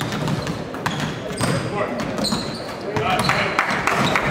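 Basketballs bouncing on a hardwood gym floor during dribbling, several bounces at an uneven pace, with people talking in the background.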